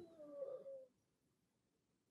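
Near silence, with a faint, brief pitched sound in the first second that dies away.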